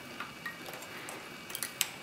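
Faint, scattered small metal clicks and ticks as a pick and fingers work a brass lever out of the lever pack of an S&G mailbox lock, with a sharper click near the end.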